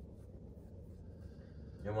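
Quiet room tone with a faint low steady hum, then a man's voice starts speaking near the end.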